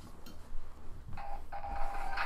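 3D Pinball Space Cadet game sounds from a laptop's built-in speaker: a few faint clicks, then about a second in a steady electronic tone begins and holds as a new game starts.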